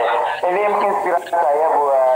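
Speech: a man talking, heard through the thin, compressed sound of a live video call.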